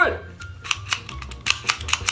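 Rapid plastic clicking from the Treasure X Mega Treasure Bot's drill arm attachment as its geared blade is worked back and forth, about six to seven clicks a second.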